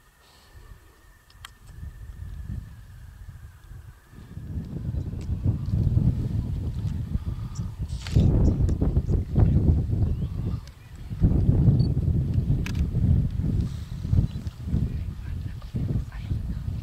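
Wind buffeting the microphone: a low, gusting rumble that comes in about four seconds in and stays strong, with a few light clicks on top.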